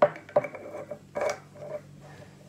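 A small glass spice jar and its screw-top lid clinking as they are handled: three sharp clinks in about a second and a half, the first loudest, each with a short ring.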